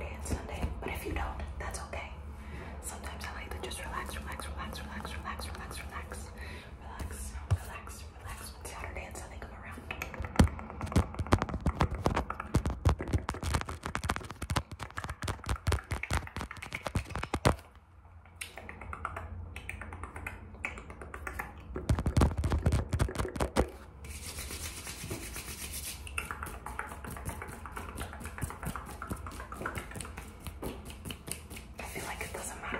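Fast, random fingernail and finger-pad tapping and scratching close to the microphone, in dense runs of quick clicks that come thickest in two spells, with soft mouth sounds alongside.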